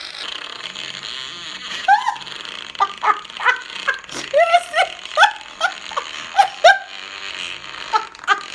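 A woman laughing hard in a series of short, high-pitched bursts, quieter at first and then coming several times a second from about three seconds in.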